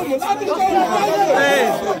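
Crowd of spectators talking and shouting over one another, a babble of overlapping voices with raised calls.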